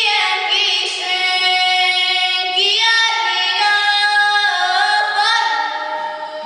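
A girl singing a Hungarian folk song solo and unaccompanied, in long held notes joined by short ornamented turns in pitch.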